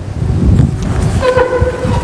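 A low rumble, then a horn sounding one steady note that starts a little over a second in and lasts under a second.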